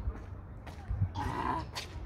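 A baby's brief laughing squeal about a second in, over a low rumble.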